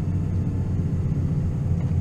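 Steady low drone of a vehicle's engine and running gear, heard from inside the cab.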